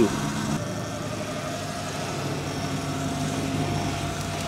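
Sur-Ron electric dirt bike riding along: a faint steady whine from the motor and chain drive over road and wind noise, the whine sinking slightly in pitch as the bike slows.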